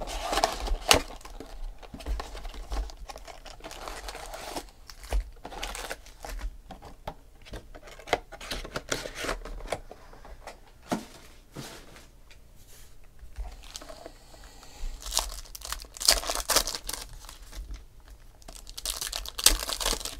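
Foil trading-card pack wrappers crinkling and tearing as they are opened and handled by hand, in irregular rustling bursts with small clicks. The rustling is busiest at the start and again in the last few seconds.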